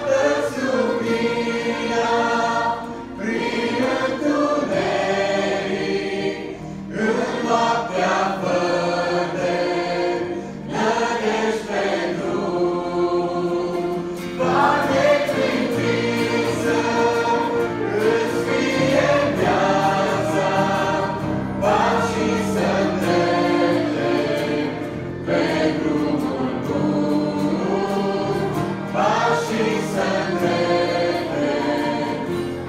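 Mixed church choir of men's and women's voices singing a gospel hymn, in sustained phrases a few seconds long with short breaks between them.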